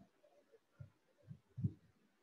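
A few faint, short, low thumps at irregular intervals, three in the second half, the last one the loudest, over quiet room tone.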